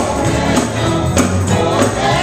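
Live gospel band playing an upbeat groove: drum kit with sharp hits about every two-thirds of a second over an electric bass line, with tambourine and choir voices.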